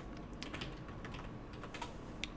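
Keystrokes on a computer keyboard: an irregular run of light, quick key clicks as a web address is typed.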